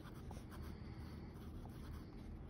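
Pen writing on ruled notebook paper: faint strokes as letters are written.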